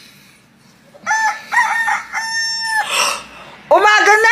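A rooster crowing, beginning about a second in: a few short clipped notes, then one long held note. A second rising call starts near the end.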